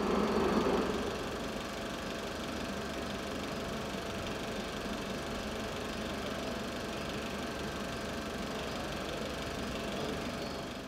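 Reel film projector running, a steady mechanical clatter and whirr from its motor and film transport, a little louder in the first second.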